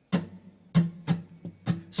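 Acoustic guitar strummed in about five quick, unevenly spaced strokes, each chord ringing briefly. The strums follow no fixed down-up pattern but come in free bursts, the loose 'ocean strumming' style.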